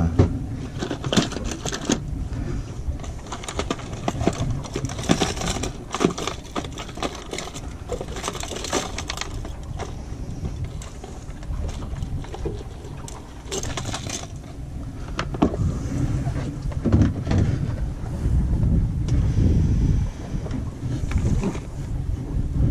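Hard plastic fishing lures and their hooks clicking and rattling against each other and the box as hands rummage through a plastic tackle box. Near the end, wind buffets the microphone with a low rumble.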